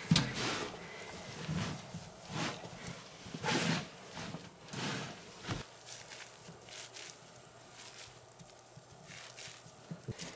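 Bare hands mixing wet adobe mud with wood chips in a tub: a series of irregular squishing, rustling strokes, then quieter handling for the last few seconds.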